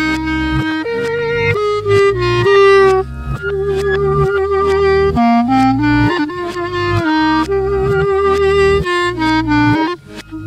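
Clarinet-led instrumental recording played in reverse: long clarinet melody notes with vibrato over a band backing with a steady beat.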